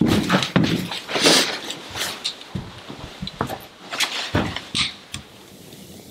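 Footsteps and scattered knocks of a person coming down a staircase and handling gear, irregular and growing fainter over about five seconds before going quiet.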